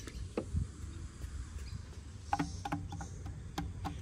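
A few light, scattered taps on outdoor playground percussion pads, some with a short pitched ring, mostly in the second half, over a faint low rumble.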